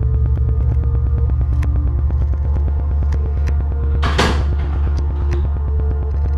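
Film background score: a deep steady bass drone with scattered sharp ticks, and a loud rushing whoosh about four seconds in.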